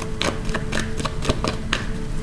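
Tarot cards being handled, likely drawn from the deck: light, irregular clicks, about four or five a second. A faint steady two-note hum runs underneath.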